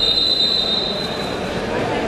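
A referee's whistle blown in one long, steady, high note lasting about a second and a half, over gym room noise.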